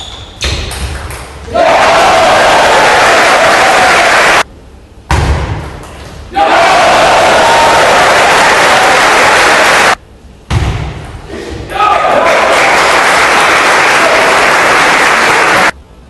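Spectators in a sports hall clapping and cheering in three long loud bursts as table tennis points are won. In the short gaps between them come the clicks and bounces of the celluloid ball on table and bats.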